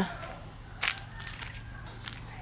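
Footsteps on a dirt path over a quiet background, with one short crunch about a second in.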